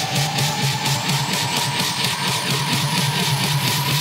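House music from a DJ mix in a build-up: a fast, even drum roll under a slowly rising synth sweep, with the deep bass filtered out.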